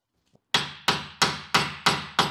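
Hammer striking a 1.6 mm steel blank clamped in a vise, rounding its edge over a radiused mild-steel block. After about half a second of quiet come five sharp blows, about three a second, each ringing briefly.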